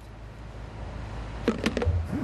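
Steady low hum of a small indoor plant room, with a few light clatters of plastic buckets being handled about a second and a half in.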